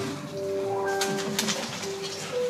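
Instrumental background music with long held notes, a lower note sustained for over a second while short higher notes and a few light clicks come in around the middle.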